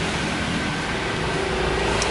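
Steady background noise with a low rumble and a faint steady hum.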